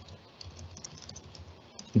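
Typing on a computer keyboard: a run of faint, quick key clicks as a short terminal command is entered.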